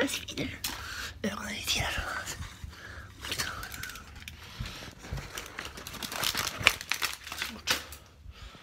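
A person's voice close to a phone's microphone, making low sounds without clear words, mixed with rustling and frequent clicks from the phone being handled.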